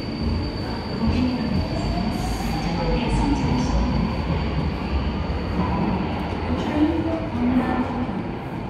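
Incheon Line 2 light-metro train approaching the station in its tunnel, heard through the platform screen doors: a steady low rumble with a faint whine that rises and then falls, and a thin, steady high tone.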